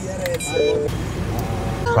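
Steady low rumble of idling vehicles, with a short flat horn toot about half a second in.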